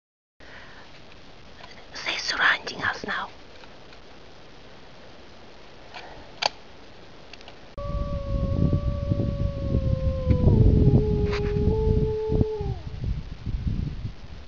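A single long howl, held steady, stepping down in pitch partway through and falling away at the end, over a rumble of wind on the microphone. A brief whisper comes early on.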